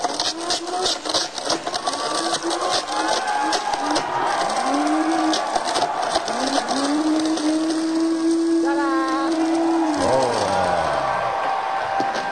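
Blendtec blender motor running in short runs, its pitch climbing each time it spins up, then holding one steady pitch for a few seconds before stopping about ten seconds in, with sharp clattering as a wooden broom handle is chopped up in the jar.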